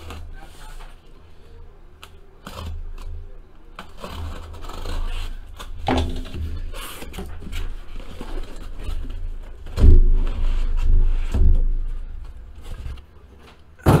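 A cardboard shipping case being cut open with a folding knife and its flaps pulled apart, with scraping, clicking and rustling of cardboard. Then boxes are set down on a tabletop with a few heavy thumps, the loudest about ten seconds in.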